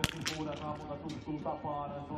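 A single sharp crack of a small-bore .22 biathlon rifle shot fired from the prone position, right at the start, followed by a fainter click about a quarter second later.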